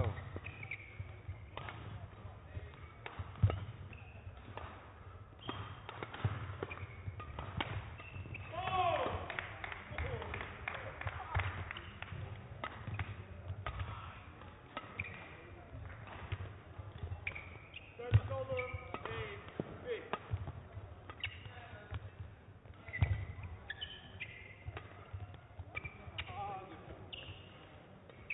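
Badminton rally: rackets striking the shuttlecock in sharp cracks at irregular intervals, the loudest about three, eighteen and twenty-three seconds in, with shoe squeaks and footfalls on the court floor.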